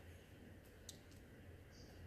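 Near silence: quiet outdoor ambience with a few faint, sharp clicks, the clearest just under a second in, and a brief high chirp near the end.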